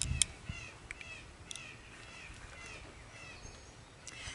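Birds chirping in the background, short calls repeated throughout. A couple of light clicks right at the start as a pair of eyeglasses is handled and put on.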